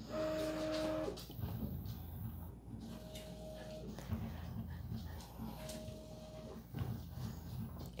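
Prusa i3 MK3S+ 3D printer's stepper motors running as the print head and bed make their start-of-print homing and calibration moves: short steady whining tones of about a second, near the start, around three seconds in and again around six seconds in, with a low motor hum between.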